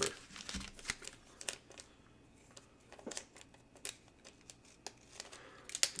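Trading cards and plastic card sleeves being handled on a table: scattered light rustles and small clicks, with a quiet stretch between them.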